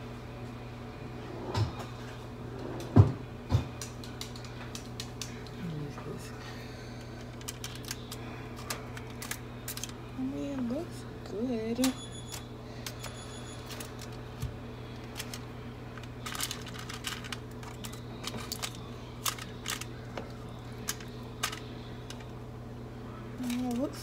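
Fork and knife clicking and scraping on a foil-lined pan of baked chicken as it is cut open to check whether it is done, after a few loud knocks in the first few seconds. A steady low hum runs underneath.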